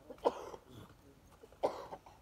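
Two short coughs, about a second and a half apart.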